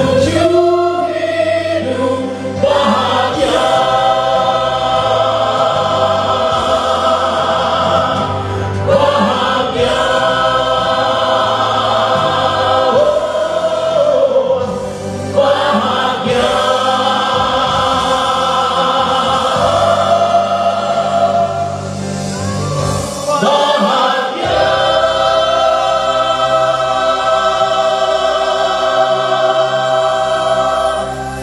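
A man singing a gospel song through a microphone and PA, in long phrases of held notes, with musical accompaniment underneath.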